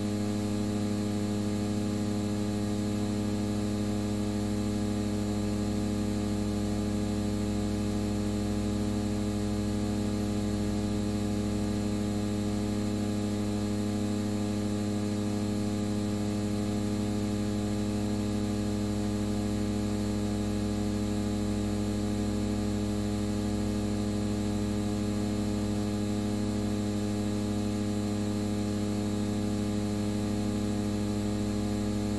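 Steady electrical hum with a stack of overtones, unchanging throughout, over a faint hiss.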